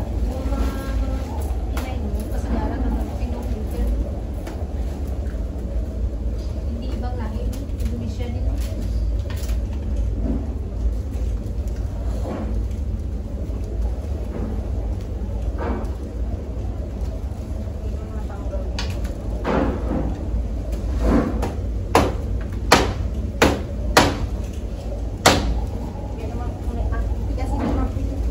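A rattan chair frame being dismantled by hand: faint working noises, then a run of sharp knocks in the last seven seconds, about one a second, as the frame is struck with a tool. A steady low rumble runs underneath.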